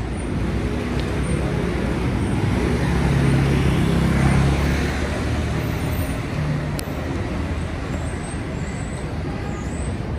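City street traffic noise, with a heavy vehicle's engine hum swelling and passing about three to five seconds in.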